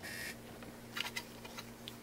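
Plastic graded-card cases being handled: a brief rustle, then a few faint light clicks, over a low steady hum.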